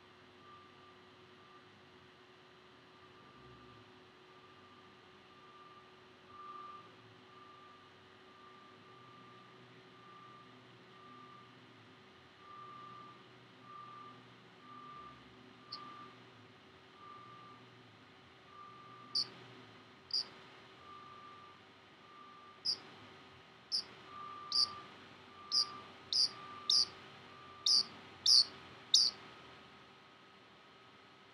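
Pacific parrotlet giving short, sharp, high chirps, his "fire alarm sounds", starting about halfway in and coming louder and closer together toward the end. Behind them a faint electronic beep repeats steadily a little more than once a second, the alarm-like sound the bird is answering.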